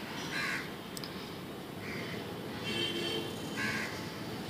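Faint scratchy strokes of a felt-tip pen on paper as a circle is drawn. A short pitched animal call sounds faintly in the background a little under three seconds in.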